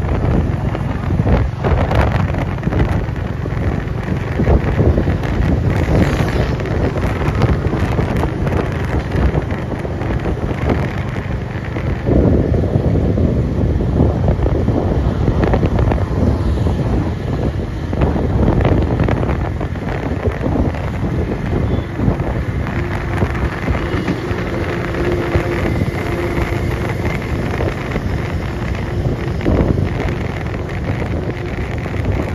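Wind rushing hard over the microphone of a moving Royal Enfield motorcycle at highway speed, mixed with the bike's engine running and the rumble of passing traffic. A faint steady hum joins in during the second half.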